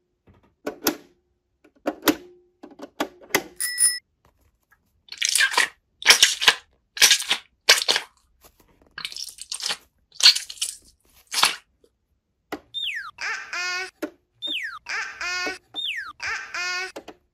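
Plastic toy garage doors clicking open, with a brief ding, then a foam stress ball squeezed over and over in crunchy squishing bursts. Near the end, three falling whistle tones, each followed by a warbling tone.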